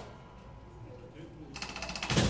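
Robotic kinetic percussion instrument: a single sharp click, a quiet pause with faint ticks, then from about a second and a half in a fast rattle of small clicks.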